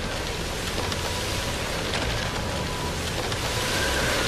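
Storm sound: a steady rushing noise of wind and water with a low rumble underneath.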